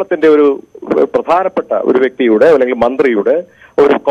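Speech only: a man talking without pause, his voice thin and narrow as if heard over a phone line.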